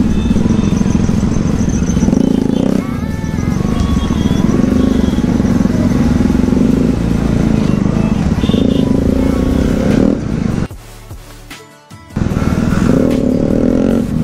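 Bajaj Pulsar NS200 motorcycle engine running loud on the move, its pitch rising and falling with the throttle. About ten seconds in it drops away sharply for a second or so, then comes back just as loud.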